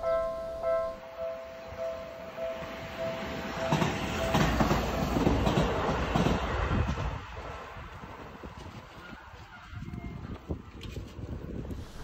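Level-crossing warning signal ringing in even pulses about twice a second, then an electric commuter train, a Seibu 40000 series, passing over the crossing from about four seconds in. The passing rumble is loudest for about three seconds and then fades away.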